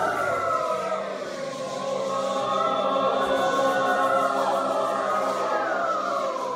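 Mixed choir singing held chords, the voices sliding down in pitch near the start and again near the end.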